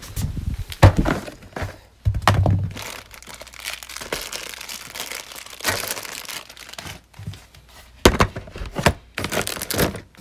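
Plastic storage bin being pulled off a shelf and set down with several sharp thunks, and small plastic bags of LEGO pieces crinkling as a hand rummages through the bin; more knocks and crinkling come near the end as the lid is handled.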